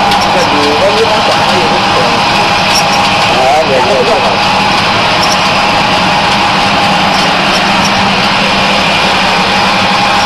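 Samosa and dumpling forming machine running steadily as a dough sheet feeds through its rollers: a constant mechanical hum with a steady higher tone held throughout. Faint voices are heard briefly in the background.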